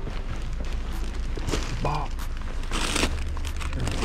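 Plastic grocery bags rustling and crinkling as they are set down on a concrete step, with a short burst of rustling about three seconds in, over a steady low rumble.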